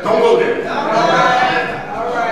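A man's voice preaching in a long, drawn-out chanted vowel, its pitch held and then sliding, loud against the room.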